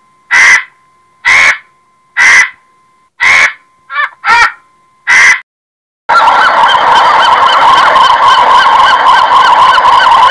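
Vulture giving short, harsh calls about once a second, one of them doubled. After a brief break about six seconds in, a pelican colony's continuous chorus of many birds calling over one another.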